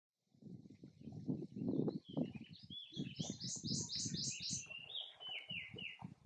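A prothonotary warbler singing: a run of about six quick repeated ringing notes, then a few lower notes near the end. Underneath is an uneven low rumbling noise, louder than the song.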